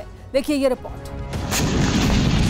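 A rumbling explosion sound effect that swells up about a second in and grows louder, laid under a newscast after a woman's brief words.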